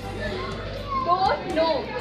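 Young women's voices in lively, high-pitched talk, strongest about a second in.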